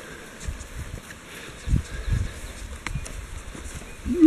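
Running footsteps on wet meadow grass: irregular dull thuds, with a few light clicks.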